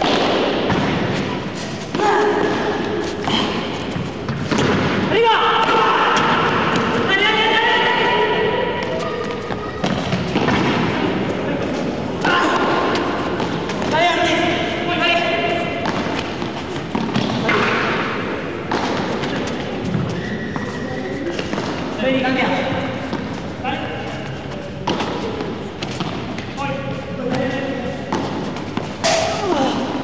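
Padel rally: the ball is struck by solid paddles and bounces off the court and the glass walls in repeated short thuds, over continuous talking.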